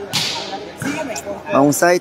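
A volleyball struck hard by hand: one sharp smack with a short echo, followed by a man's voice commentating.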